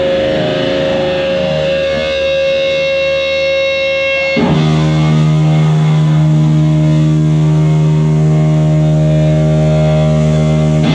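Live rock band with distorted electric guitars and bass holding long sustained chords, switching abruptly to a new, lower chord about four and a half seconds in.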